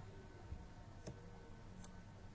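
Computer mouse clicking twice, a faint click about a second in and a sharper one near the end, over a low steady hum.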